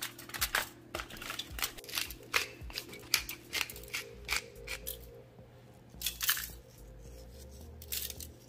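Aluminium foil crinkling and crackling as a large raw salmon fillet is flipped over on it: a dense run of sharp crackles for the first few seconds, then only a few.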